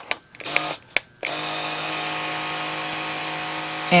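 Battery-powered handheld plant mister switching on about a second in and running steadily: its small electric pump motor hums under the hiss of fine spray as it wets the freshly covered soil in a seed pot.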